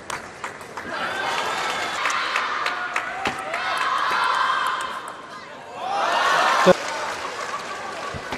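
Table tennis ball clicks of a rally in the first second, then the arena crowd cheering and shouting for the won point. The cheering dips about five seconds in, swells again, and a sharp knock comes near the seven-second mark.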